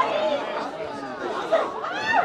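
Several people shouting and calling at once: overlapping voices of players and onlookers on a football pitch, with no single word standing out.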